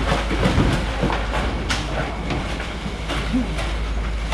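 Irregular knocks and clatter of fish, ice and plastic bins being handled, over a steady low engine hum.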